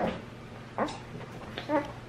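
Short, soft whimpering sounds from a small child, three brief fragments with a quiet word spoken among them.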